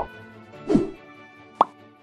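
Outro music holding a sustained chord that fades out, overlaid with animation sound effects: a short falling whoosh-pop past the middle and a sharp click, like a mouse click, near the end.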